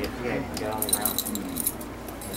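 A small dog's harness hardware jingling as the dog moves: a quick run of light metallic chinks, thickest about a second in.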